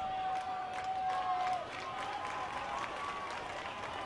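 Crowd noise from the stands of a ballpark, with faint distant voices and scattered clapping, and a steady high tone held for about a second and a half at the start.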